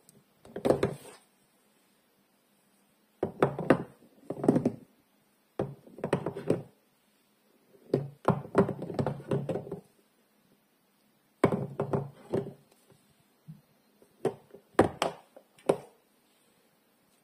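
Hard bars of soap knocking and clacking against one another as they are picked up and set down on a heap of soap bars. The knocks come in six short clusters a couple of seconds apart, with near silence in between.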